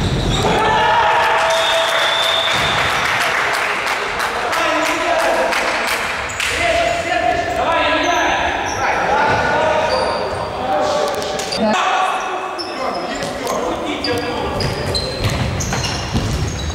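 Futsal ball being kicked and bouncing on a sports-hall floor, with players shouting, all echoing in a large hall.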